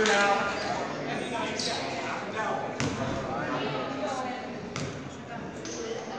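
Basketball bounced a few times on a hardwood gym floor, as a shooter dribbles before a free throw, over the chatter of spectators in a large gymnasium.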